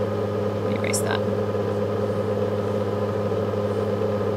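Steady low hum from the recording, holding at one pitch throughout, with a short faint sound, like a breath or brief vocal noise, about a second in.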